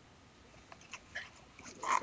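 Mostly quiet room tone with a few faint, short clicks near the middle, and a man's voice starting right at the end.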